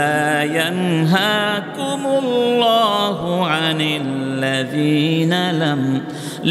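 A man reciting a Quranic verse in Arabic in a melodic chant, drawing out long, ornamented notes with short pauses for breath between phrases.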